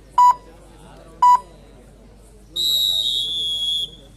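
Two short electronic beeps about a second apart, then a long shrill whistle blast lasting over a second, its pitch stepping down slightly near the end.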